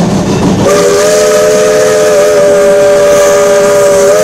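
Steam locomotive chime whistle sounding one long, steady blast of several notes together, starting under a second in over the rush of the engine's steam and running noise.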